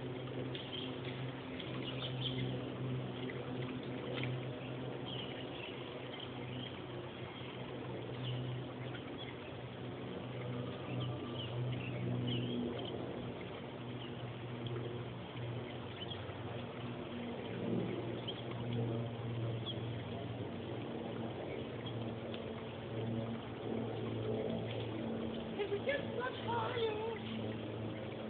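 Steady outdoor background: a low, even hum under a soft hiss, with faint high chirps scattered through it.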